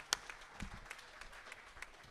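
Audience applauding, a thin spatter of separate hand claps.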